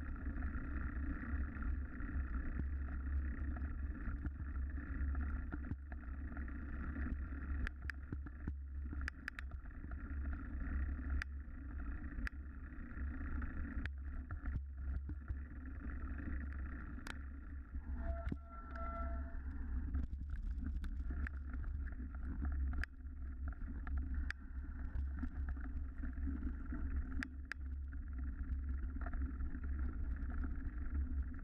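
A vehicle ridden along a rough grassy and dirt trail: a steady low drone with frequent short knocks and rattles from the bumpy ground.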